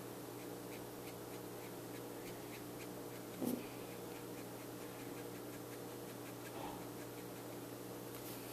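Faint strokes of a Copic Sketch marker's brush nib on paper, soft ticks a few times a second, over a steady low hum. A brief low sound about three and a half seconds in.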